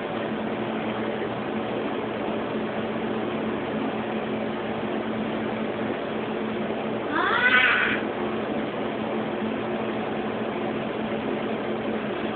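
A blue point Siamese cat meows once, a single call of about a second that rises and then falls in pitch, about seven seconds in, over a steady low hum.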